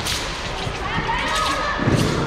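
Wushu sabre (dao) swung through the air in a few sharp swishes during a routine, followed near the end by a thud as the performer drops into a low stance on the competition carpet.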